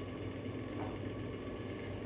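Steady low background hum, even throughout, with no distinct handling sounds standing out.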